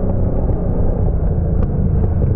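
Yamaha R1 superbike's inline-four engine running steadily at racing speed, heard close up from the bike's onboard camera.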